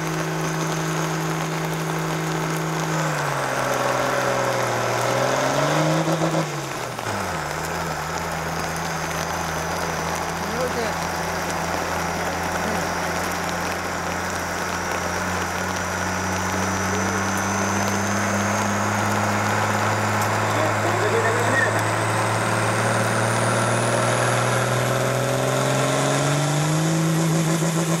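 Blue Ford farm tractor's diesel engine working hard under full load on a hill pull: its pitch drops a few seconds in as the engine lugs down, then climbs slowly as it pulls and rises sharply near the end, with a faint high whine following the engine speed.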